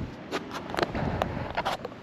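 Boots walking on lake ice: short separate steps, about two a second.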